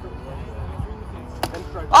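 Plastic wiffleball bat striking a wiffle ball: a single sharp crack about a second and a half in. It is solid contact that sends the ball out of the field for a home run.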